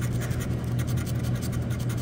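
Scratch-off lottery ticket having its coating scratched off with the blunt end of a pencil: rapid, continuous rasping strokes. A steady low hum runs underneath.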